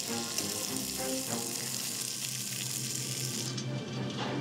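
Breaded patties frying in hot oil in a skillet, sizzling steadily, with the sizzle cutting off about three and a half seconds in. Background music plays underneath.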